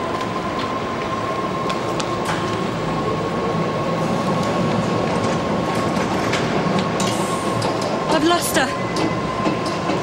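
Docklands Light Railway train running at a station platform: a steady high whine over a constant rumble, with a faint tone rising in the middle as the train moves off.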